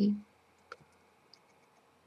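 The tail of a woman's spoken word at the start, then near silence with a single faint click about 0.7 s in.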